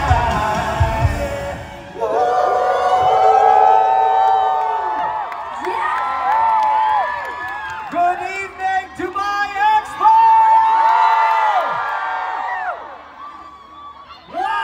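Live pop concert at the end of a song: the beat and bass cut out about two seconds in, leaving a singer's long held note and vocal runs, with crowd whoops and screams, which fade near the end.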